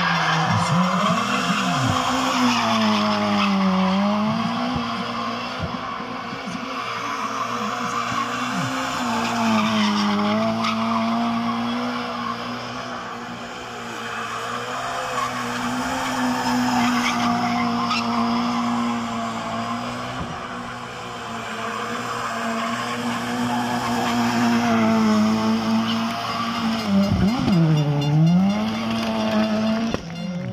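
Rally car drifting in continuous circles, its engine held at high revs the whole time with its pitch dipping briefly a few times, over the steady squeal and hiss of spinning tyres.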